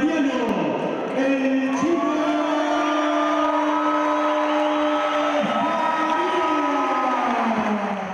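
A boxing ring announcer's voice over the hall's public-address system, calling out in long stretched syllables. One note is held for about three seconds in the middle, the way a fight winner's name is drawn out.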